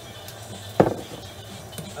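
A single loud clink of glassware a little under a second in, a glass knocking against a glass mixing bowl, with a short ring after it.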